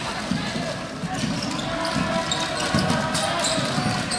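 A basketball being dribbled on a hardwood gym floor, a series of irregular bounces, over the steady murmur of the crowd in a large hall.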